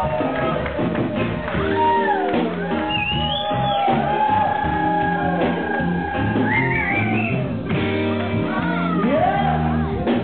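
Live band playing a song: bass, electric guitar and keyboards, with a lead line of long held notes that slide up in pitch, and voice over the music.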